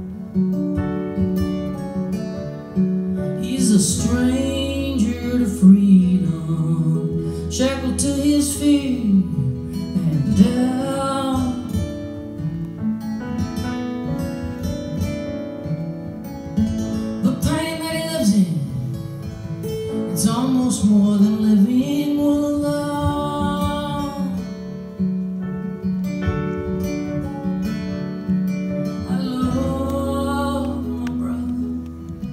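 Live folk song: two acoustic guitars played together while a woman sings long, slow phrases with pauses between them.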